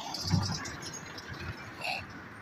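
Outdoor street background noise with no one talking, with a few low thumps about half a second in.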